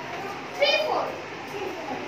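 Young children's voices in a classroom: one high-pitched child's voice calls out loudest about half a second in, with quieter chatter around it.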